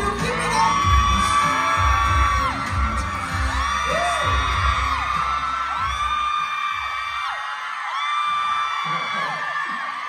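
Audience of fans screaming in long, high-pitched held cheers over loud music with a heavy beat. The beat drops out about six seconds in, and the screaming carries on.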